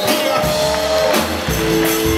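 Live band vamping: a long held note that gives way to two lower held notes about a second and a half in, over drum and cymbal hits.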